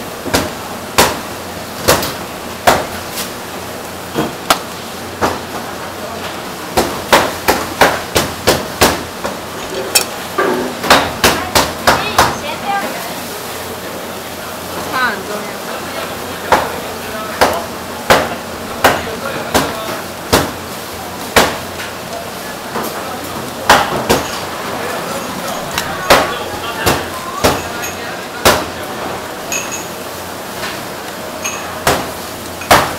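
Irregular sharp knocks and clacks of kitchen work on a wooden counter, a quick run of them in the middle, over a steady kitchen background noise.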